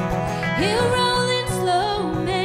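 Live Americana song with strummed acoustic guitar and electric guitar, and a woman singing. About half a second in, a note slides up and is held for about a second.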